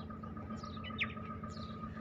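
A few short, high bird chirps over a steady low outdoor rumble, with a faint steady whine running underneath.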